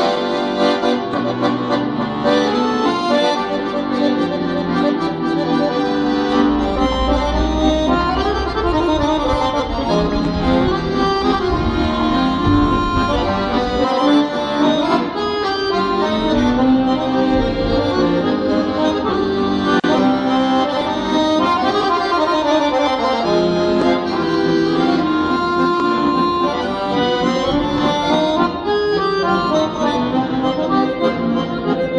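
Two piano accordions, one a Weltmeister, playing a traditional tune together without pause: a melody line over sustained chords and a bass accompaniment.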